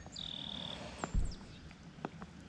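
A bird calls: one clear, steady high whistled note of about half a second, then a brief high chirp, over a faint hiss of creek water. A soft low thump comes just after the chirp.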